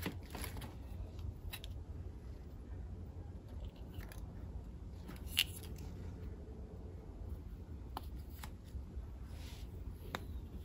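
Small clicks and rustles of metal and rubber shifter parts being handled and fitted together by hand during reassembly of a manual-gearbox shifter, with one sharper click about five and a half seconds in, over a low steady hum.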